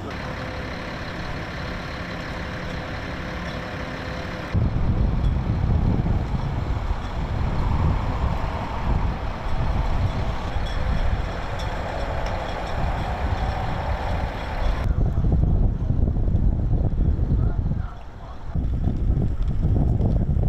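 Outdoor city street ambience: a steady bed of traffic noise with a deep rumble. It changes abruptly twice, about a quarter of the way in and again about three-quarters through.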